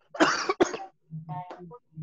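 A man coughing: a cough about a quarter second in, followed at once by a second, shorter one.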